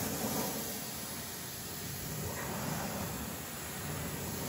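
MTM Hydro PF22 foam cannon on a pressure washer spraying diluted Labocosmetica Primus pre-wash onto a car wheel and tyre: a steady hiss of spray.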